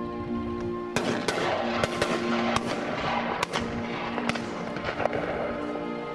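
Shotgun shots in quick succession, about a dozen of them starting about a second in, over background string music.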